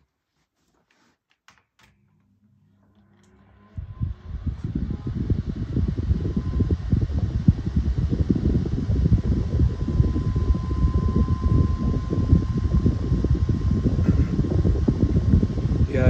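A 6-inch Airflo desk fan and a 9-inch Challenge high-velocity desk fan being switched on at low speed. A couple of switch clicks come first, then a motor hum and a rising whine as the blades spin up. From about four seconds both run steadily: a loud, uneven rush of air with a thin high tone above it.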